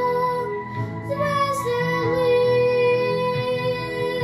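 A young girl singing in an academic classical style over an instrumental accompaniment, moving through a short phrase and then holding one long note through the second half.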